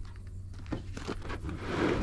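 A few footsteps on gravel, soft crunches with a rising rush of noise near the end.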